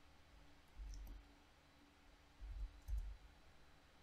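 Faint computer keyboard typing: a few soft key clicks and thumps about a second in and again near three seconds, over a faint steady hum.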